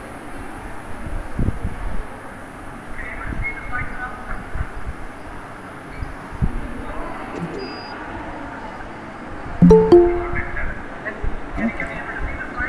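Open video-call audio with faint background voices and low thuds. About ten seconds in comes a short, loud chime of a few steady notes: Google Meet's alert that someone is asking to join the call.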